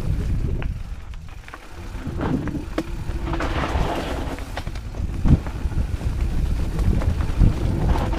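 Rocky Mountain 790 MSL mountain bike descending a rocky dirt trail: wind buffets the camera microphone over the rumble of tyres on rock and dirt, with scattered knocks and rattles from the bike. There is a brief rush of noise about three and a half seconds in and a sharp thump a little after five seconds.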